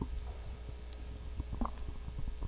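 Handling noise from a handheld microphone being moved and lowered onto a lectern: a few soft knocks and rubs, the strongest about one and a half seconds in, over a steady low hum from the sound system.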